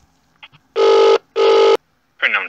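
British telephone ringback tone heard over the phone line: one double ring, two short steady tones in quick succession, as the transferred call rings at the other end.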